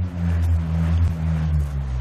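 Bullroarer, a carved oblong blade whirled overhead on a string, giving a low steady roaring drone. Its pitch drops near the end.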